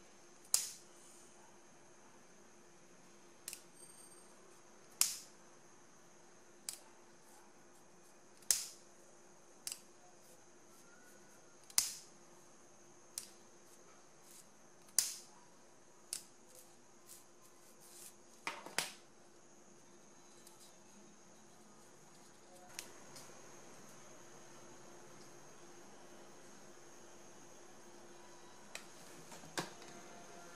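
A disposable lighter being struck again and again, about a dozen sharp clicks one to three seconds apart and fewer near the end, as its flame seals the edges of folded ribbon petals. A faint steady hum runs underneath.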